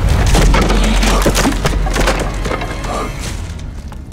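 Fight sound effects for a wooden creature being struck: a heavy impact with a low boom at the start, followed by a run of wooden cracking and splintering that dies away over a few seconds.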